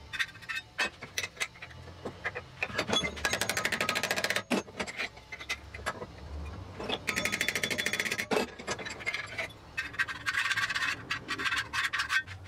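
A folded sheet-metal jaw cover clicking and knocking against a cast-iron bench vise as it is handled and fitted over the jaws. Three stretches of rapid rattling or scraping come between the knocks.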